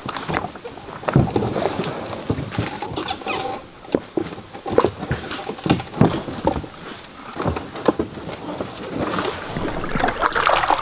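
A canoe being hauled through tall grass and brush, with footsteps, rustling and uneven scrapes and knocks of the hull.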